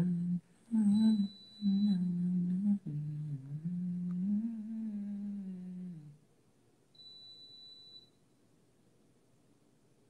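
A man humming a tune to himself in a few short, wavering phrases for about six seconds. After a pause comes a faint, high, steady tone lasting about a second.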